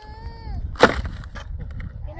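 A shovel blade strikes the stony ground once, a sharp knock about a second in, with a few lighter scrapes after it. Before it, a drawn-out wailing cry trails off in a falling tone.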